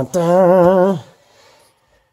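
A man's voice holding one wavering note for just under a second, a hum or drawn-out 'uhh' between phrases, then quiet.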